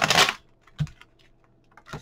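A deck of oracle cards riffle-shuffled: a quick dense run of card clicks in the first half second, then a single soft click a little later.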